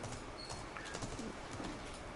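Faint laptop keyboard typing under low room noise.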